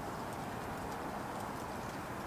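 Steady, low background hiss with no distinct sounds: room tone.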